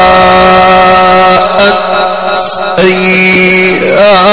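A male Quran reciter's voice holding one long, drawn-out note in the melodic mujawwad style of recitation. The note dips briefly in loudness about halfway through, then carries on.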